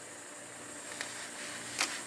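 Quiet room tone with a faint steady hum, broken by light handling clicks, one about a second in and a couple near the end, as a hand puts down a paper card and reaches into a cardboard box.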